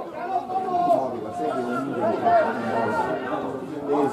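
Several people talking over one another near the microphone: steady spectator chatter at a football match.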